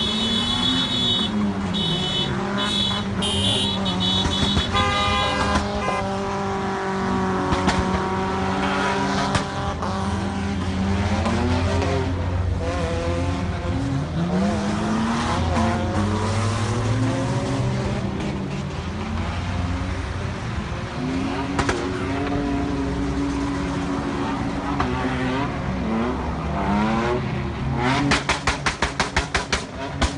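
Car engines revving hard, their pitch rising and falling again and again, as cars drift and skid on a street, with horns sounding in short blasts in the first five seconds. Near the end comes a rapid run of sharp cracks, several a second.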